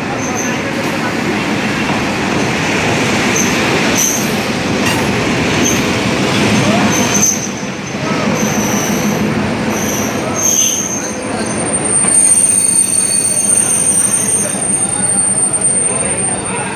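A diesel-hauled passenger train rolls slowly into a platform at close range: a loud steady rumble of the locomotive and coaches, wheel clatter, and repeated short high wheel and brake squeals. A steady high brake squeal runs through the last few seconds as the train comes to a stop.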